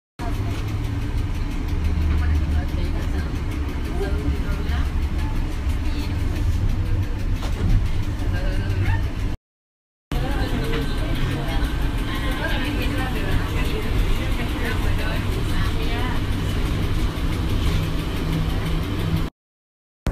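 Cabin sound inside a moving NAW trolleybus: a steady low hum of the electric drive and road noise, with indistinct voices over it. The sound cuts out for about half a second near the middle and again near the end.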